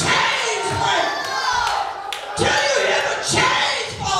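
A preacher's impassioned voice, loud over a microphone, with a congregation shouting responses.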